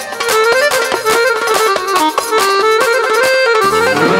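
Live band playing an instrumental break of traditional dance music: a reedy, accordion-like lead melody over steady drum strokes, with the bass filling back in shortly before the end.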